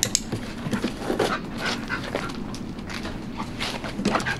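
A German Shepherd panting, with many short taps and clicks scattered through it.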